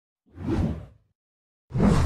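Two whoosh sound effects from an animated logo intro, each swelling up and fading away. The first comes about half a second in, and the second starts near the end.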